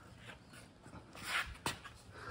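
Mostly quiet, then a short breathy rush of noise about one and a half seconds in, followed by a single sharp metallic click as the breaker bar, extended with a floor-jack handle, breaks the axle hub nut loose.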